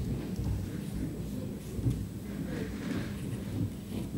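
Low, rumbling room noise of people moving about a conference stage between speakers, with a faint steady electrical hum underneath.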